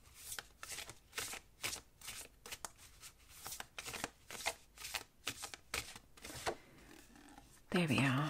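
A deck of oracle cards shuffled overhand by hand: a quick, irregular run of soft card-on-card strokes that dies away about six and a half seconds in. A brief voice sound comes near the end.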